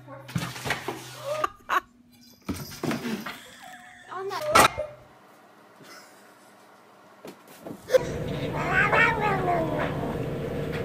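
A cat's odd, drawn-out meow bending up and down in pitch, starting about eight seconds in. Before it come brief voices and a sharp knock about halfway through.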